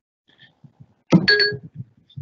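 A short electronic chime through the video-call audio, about a second in: a sudden onset with a held tone lasting under half a second. Faint, broken low sounds run around it.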